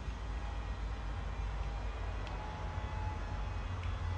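Steady outdoor background noise: a low rumble with a light hiss, with no distinct events.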